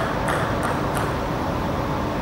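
Table tennis ball bounced three times in quick succession, about a third of a second apart, in the first second, as the server gets ready, over a steady background hum.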